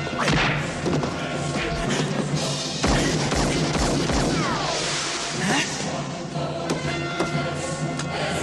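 Film soundtrack: music running under action sound effects, with several heavy thuds and crashes and swishing whooshes around the middle.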